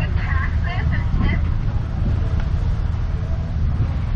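A steady low rumble of outdoor background noise, with faint short higher-pitched sounds in the first second or so.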